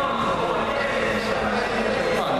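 Indistinct talk of several people mixing in a large, echoing hall, with no single clear voice.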